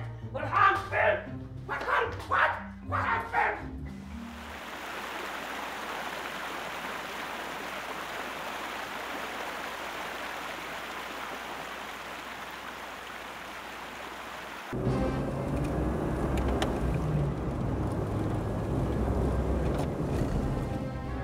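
Short loud calls, about two a second, for the first few seconds, then a steady rushing noise. About three-quarters of the way through, a sudden cut brings in the louder low rumble of a car driving, heard from inside the car.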